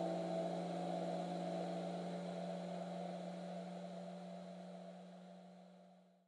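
Piano's closing chord left ringing and slowly dying away, the upper notes fading first and a low note held longest until it trails off at the end.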